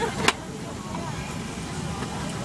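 Steady cabin hum of a parked MD-11 airliner, with passengers talking in the background. A single sharp click comes about a quarter of a second in.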